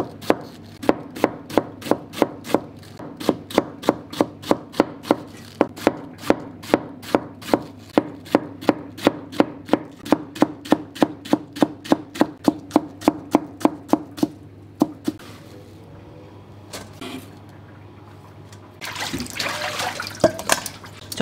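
Kitchen knife shredding cabbage on a plastic cutting board: quick, even chops about three a second that stop about fourteen seconds in. Near the end, water runs from a tap over the shredded cabbage.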